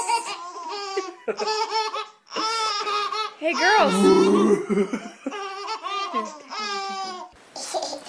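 Two babies laughing in a string of high-pitched bursts, about one a second, which break off near the end.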